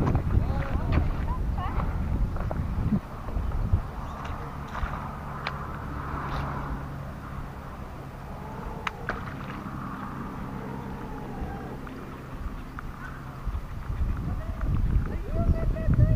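Wind and handling rumble on an EKEN H9R action camera's built-in microphone, in gusts over the first few seconds and again near the end, with a steady low hum through the middle.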